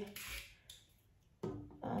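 A small kitchen knife cutting into a head of broccoli: a short, crisp scraping noise in the first half-second, then a pause. A voice comes in briefly near the end.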